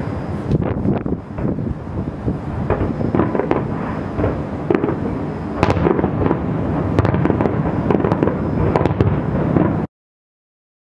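Fireworks display: aerial shells bursting with many bangs and crackles in quick succession, cutting off suddenly near the end.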